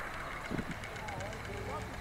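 Outdoor background sound: a steady low rumble with faint distant voices and short chirping calls, and one dull thump about half a second in.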